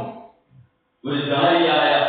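A man's voice in a sustained, drawn-out preaching delivery, trailing off for a brief pause and resuming about a second in.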